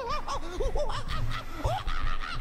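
A person laughing, the voice going up and down in short quick pulses.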